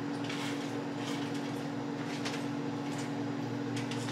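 A steady kitchen appliance hum with a constant low drone, under a few faint clinks of dishes and utensils being handled.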